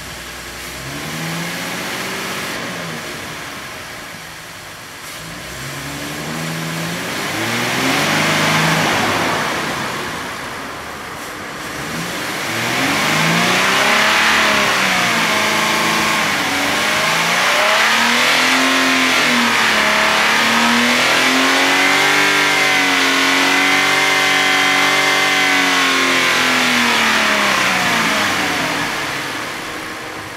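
2014 Ford Mustang engine, fitted with an aftermarket cold air intake, free-revved with the hood open: about four revs that climb and fall back, then a longer rev held steady for about seven seconds before dropping back near the end.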